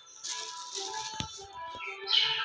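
A clear plastic bag of dried peas being handled: the plastic crinkles and the peas rattle inside, with one sharp click about a second in. Background music plays under it.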